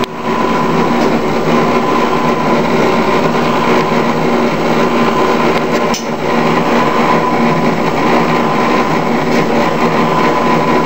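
Jack LaLanne Power Juicer's electric motor running steadily while juicing vegetables, a constant hum with a high whine. It briefly dips in loudness near the start and again about six seconds in.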